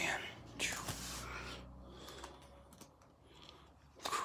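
Soft rustling of a hardcover art book's paper pages being handled, about a second in.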